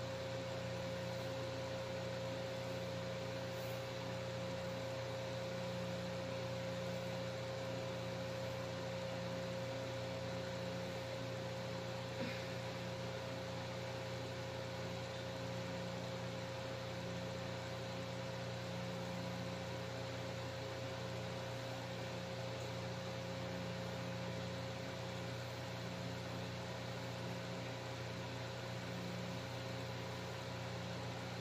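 A steady hum with one constant tone over a low drone, and a faint click about twelve seconds in.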